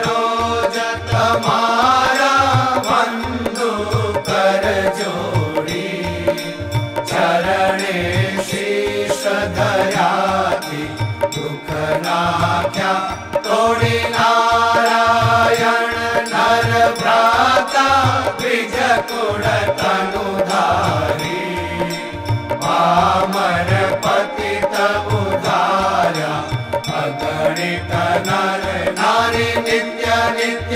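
Devotional chant-song: voices singing a melodic hymn over a steady drum beat, about two beats a second.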